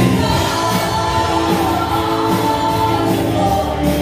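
Several women singing a gospel worship song together in long held notes, backed by a live band of keyboard, electric bass and drums.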